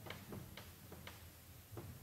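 Faint, sharp clicks or taps at uneven spacing, roughly two a second, over a low steady hum.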